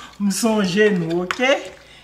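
Speech: a woman talking, with no other sound standing out.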